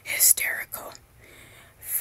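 A person whispering close to the microphone for about the first second, then a short pause before whispering again near the end.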